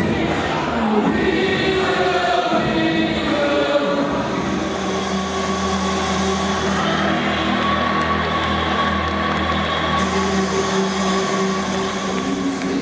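Choral singing with music: many voices holding long, sustained notes.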